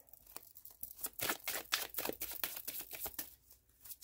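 A deck of oracle cards being shuffled by hand: a quick run of card flicks and rustles, pausing briefly near the end.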